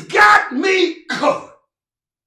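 A man preaching in a loud voice, in short emphatic phrases that stop abruptly about one and a half seconds in.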